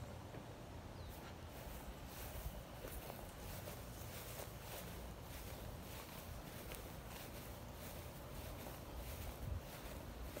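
Quiet outdoor ambience with faint, scattered footsteps as someone walks across a yard.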